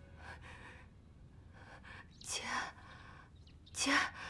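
A woman's breathy, tearful voice: faint breaths, a sharp gasp a little over two seconds in, then a whispered, choked "jie" (sister) at the very end.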